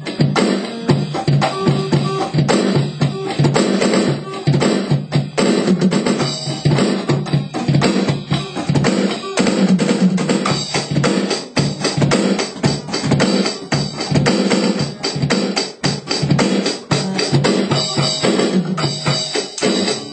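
A drum kit played in a loose jamming beat of kick, snare and cymbal hits, with an acoustic guitar playing along.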